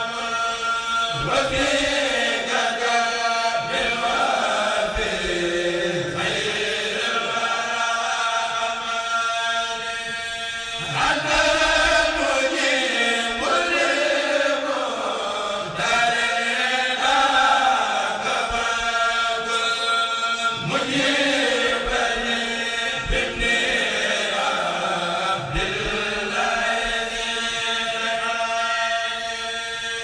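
A kourel, a group of voices, chanting a Mouride khassida (Arabic religious poem) in unison. The singing comes in long phrases, a new one starting about every five seconds.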